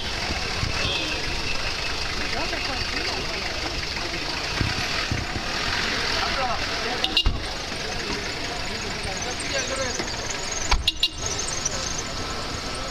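Street noise of a crowd's indistinct chatter mixed with car engines running close by, with two short bursts of knocks, about seven seconds in and again near eleven seconds.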